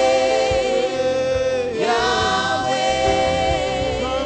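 Gospel choir singing slow worship music, voices holding long sustained notes that change pitch about every second or two.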